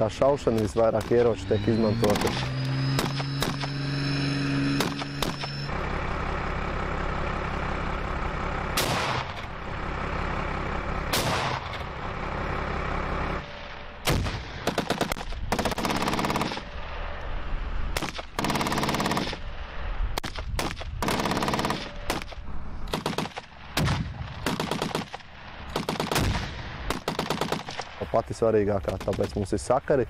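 Live-fire gunfire: a few separate shots, then rapid strings of shots several a second through the second half, typical of rifles and machine guns firing together.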